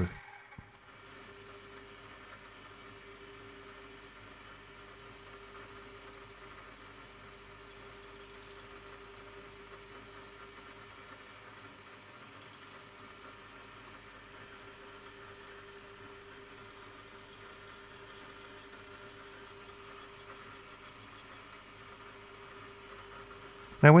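Quiet room tone: a faint steady hum with one constant tone, a few soft clicks, and a run of quick faint ticks in the second half.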